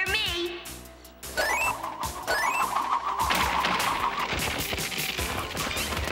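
Cartoon sound effects over music: a falling whistle, then two quick rising ones, then from about three seconds in a long crashing clatter of rapid impacts as something breaks apart.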